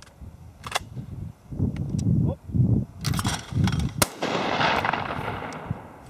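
A shotgun fires about four seconds in, a sharp, loud report that rolls away in a long fading echo across the open field. Before it there is a sharp click under a second in and low gusty rumble of wind on the microphone.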